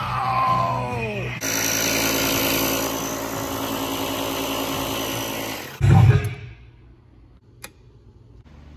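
Ryobi One+ battery fogger/mister running for about four seconds: a steady motor hum with the hiss of spray, cutting off suddenly. A loud thump follows, then a single click of a wall light switch near the end.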